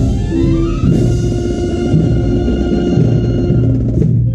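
Marching brass band playing, with clarinets, saxophones and brass over drums: a rising run leads into held chords about a second in.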